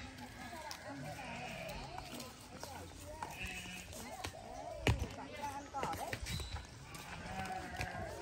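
Faint, indistinct voices of people talking outdoors, with a single sharp knock about five seconds in.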